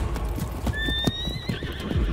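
Horse hooves clip-clopping in irregular knocks, with a horse neighing in a high, slightly rising call a little under a second long, partway through.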